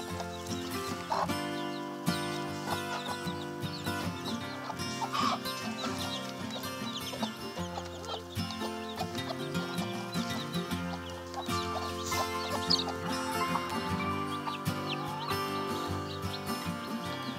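Background music of slow held chords runs throughout, with chicks peeping and a broody hen clucking now and then over it.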